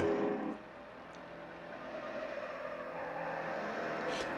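Faint sound of 1968 muscle-car V8 engines running, slowly growing louder, heard as film soundtrack playback.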